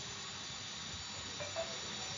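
Steady low hiss of microphone and room noise, with a faint brief tone about one and a half seconds in.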